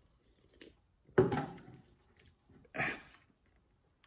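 A man swallowing a sip of zero-sugar fizzy drink from a can, with a faint sound about half a second in, then a sudden loud noise about a second in that fades quickly, and a short 'eh' near the end.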